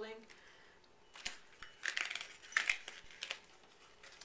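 A sheet of duct tape crinkling and rustling as hands unroll it from a tight tube, in a run of short crinkles from about a second in until past three seconds.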